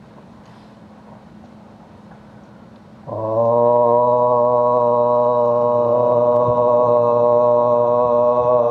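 A man's voice, starting about three seconds in, holds one long, steady chanted note: the opening drone of a soz recitation.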